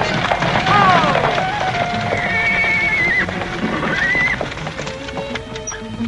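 Horses whinnying and their hooves clattering as a bolted two-horse carriage team is pulled to a halt, with background music under it. One whinny comes about a second in.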